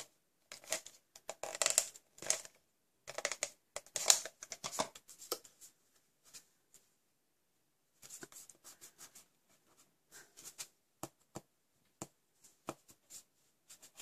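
Paper card stock being handled and pressed down on a craft mat: irregular scratchy rustles and small clicks, with a pause about six seconds in and softer handling after it. Early on an adhesive applicator is drawn along the card.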